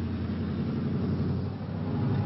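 Harley-Davidson motorcycle's V-twin engine running steadily as the bike is ridden, a dense low rumble.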